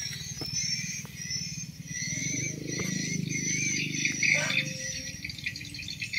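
Small birds chirping in the background, short high calls repeating over a steady low rumble.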